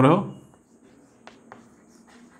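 Chalk writing on a chalkboard: a few faint taps and scratches from the strokes, following a short spoken phrase at the start.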